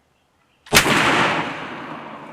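A single loud 20-gauge shotgun blast, sudden, about three-quarters of a second in, trailing off in a long fading echo.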